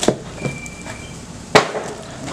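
Cardboard shipping box being handled as a small boxed item is pulled out of it: rustling, with two sharp knocks, one at the start and a louder one about a second and a half in.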